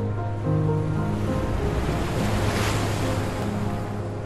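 Slow instrumental music with long held notes, with the sound of a sea wave washing in over it, swelling to a peak just past the middle and then falling away.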